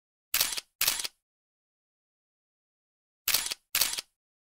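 Camera shutter clicks: two quick shutter sounds about a third of a second in, then two more near the end, with dead silence between them.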